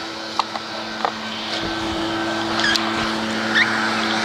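A steady machine hum from a running motor, slowly growing louder, with a few faint clicks near the start and two short rising chirps near the end.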